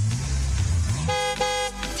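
A car engine running, then its horn honked twice in quick succession as an advert's sound effect.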